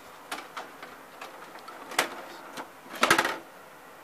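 Scattered light mechanical clicks and clacks, the sharpest about two seconds in, followed by a short clatter of several quick clicks near the end.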